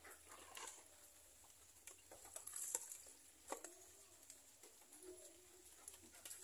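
Near silence, broken by faint clicks and taps of a plastic tub lid being handled. A dove coos faintly in the second half.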